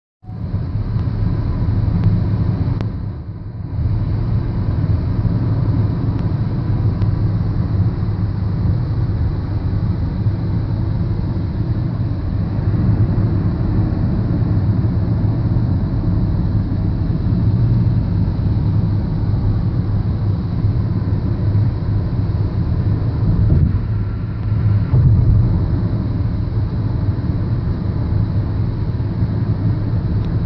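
Road and engine noise heard from inside a car driving on a highway: a steady low rumble, dipping briefly about three seconds in.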